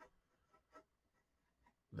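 Faint, short strokes of a pencil sketching on paper, a few separate marks over two seconds.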